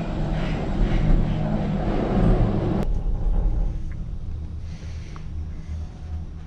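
Leitner gondola cable car heard from inside the cabin as it runs through the station: a loud, dense rumble for about three seconds. Then there is a sharp click and the noise falls to a quieter, steadier low rumble as the cabin runs out on the cable.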